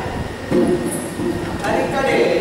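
Spoken stage dialogue: an actor's voice through the hall's microphones, in short phrases over a steady low rumble of the PA and hall.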